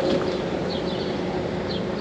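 Steady hum of a boat motor running, with a few short, faint, high bird chirps over it.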